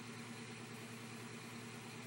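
Steady low hum with an even hiss underneath: background room tone with no distinct event.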